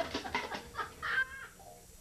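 A baby laughing in a run of short, chopped, high bursts, which stop about a second and a half in.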